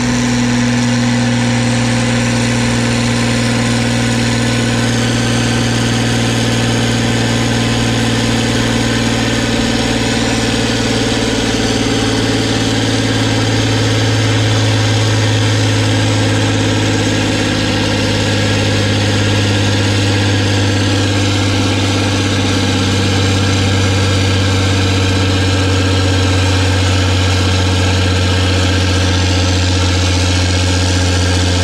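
A 40-year-old John Deere tractor's diesel engine running steadily, loud and even, its pitch dropping slightly just past halfway.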